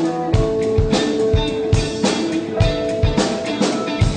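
Live blues-rock band playing an instrumental passage: a steady drum-kit beat with bass-drum hits under held guitar notes.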